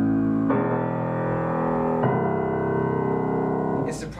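Mason & Hamlin AA grand piano playing low bass chords that sound deep and rich: a new chord is struck about half a second in and another about two seconds in, each ringing on until the sound is damped shortly before the end.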